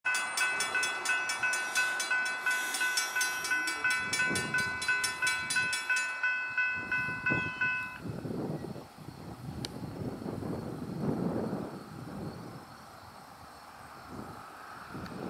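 Grade crossing warning bell ringing in even strokes, about three a second, signalling that the crossing gates are active. The ringing stops about eight seconds in, leaving a softer rustling noise.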